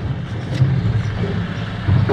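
Steady low rumble with a faint hiss inside a car cabin, with no distinct knocks or clicks.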